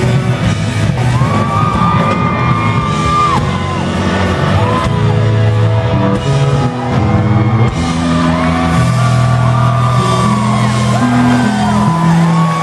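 Rock band playing loud and live: electric guitar, bass guitar and drums.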